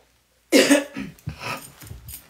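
A woman coughing: one sudden loud cough about half a second in, followed by several shorter, weaker coughs.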